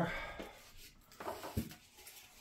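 Faint handling noises in a quiet room, with a light tap about a second and a half in.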